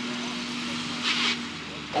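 Distant racing tractor engine, a steady hum at one pitch, with a brief hiss about a second in.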